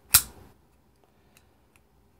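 Zero Tolerance 0566 assisted-opening folding knife giving a single sharp metallic click as its blade snaps shut into the handle, followed by a couple of faint ticks.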